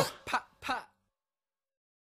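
Two short vocal sounds from a man's voice, about 0.4 s apart, the second a little quieter, as the track ends. The audio then cuts to dead silence.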